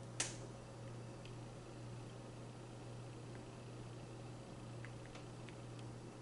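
Quiet steady low hum with one sharp click just after the start and a few faint ticks later: small knocks of a wet stretched canvas being tilted by gloved hands over its supports.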